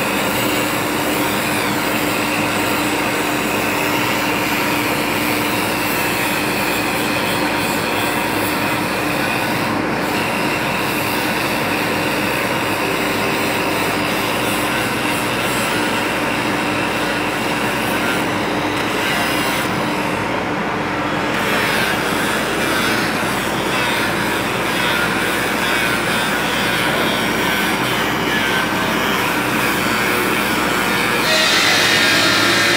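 Electric angle grinder running continuously under load, its disc grinding the edge of a stone slab. A steady motor whine sits under the grinding noise, and the grinding's pitch shifts as the disc bites harder about two-thirds of the way through.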